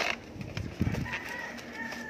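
Rustling and knocks of a fabric shock-protector cover being wrapped around and pressed onto a scooter's front fork. A rooster crows faintly in the background from about a second in.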